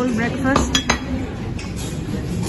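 Crockery and cutlery clinking on a dining table, with three or four sharp clinks between about half a second and one second in, over background voices.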